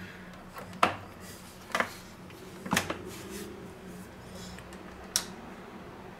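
Four short sharp clicks and knocks, spread over several seconds, as the dough hook is fitted to a Bosch kitchen stand mixer and its head is swung down over the stainless steel bowl. The mixer motor is not running; a faint steady hum sits underneath.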